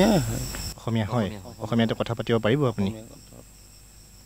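A man speaking, with a steady high-pitched chirring of crickets under the voice in the first moment that cuts off abruptly.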